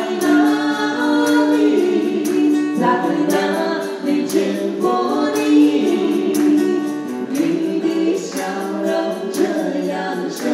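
A man and a woman singing a Mandarin folk song (minge) as a duet in harmony, with acoustic guitar strummed in a steady rhythm.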